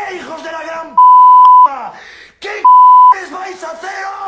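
Two loud, steady, high-pitched censor bleeps cut into shouted Spanish speech: a longer one about a second in and a shorter one near three seconds. They are bleeping out swear words.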